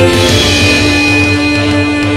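Avant-garde progressive metal music: a held note rings over a fast, pulsing low end.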